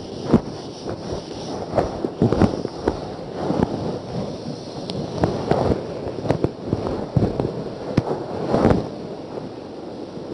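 A whiteboard being wiped clean by hand, with irregular rubbing strokes and knocks against the board. The knocking dies down about nine seconds in.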